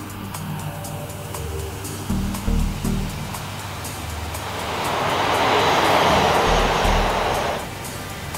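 Background music with low sustained notes, under a rushing whoosh of a passing jet airliner that swells from about halfway through and cuts off shortly before the end.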